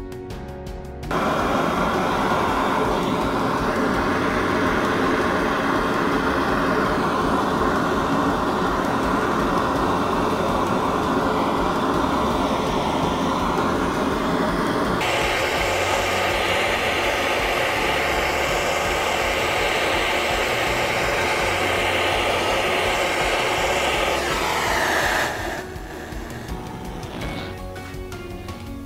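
Gas torch burning with a steady loud rushing hiss, starting about a second in and cutting off near the end, over soft background music.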